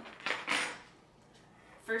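Brief clatter of a metal fork and a glass bowl being picked up off a kitchen counter, about half a second in.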